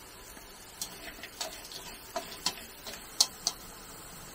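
A run of light, sharp clicks and taps, about eight over three seconds and loudest near the end, from kitchen utensils and a seasoning jar knocking while crabs are seasoned in an aluminium wok.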